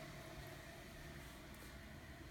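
Near silence: faint steady room tone with a light hiss.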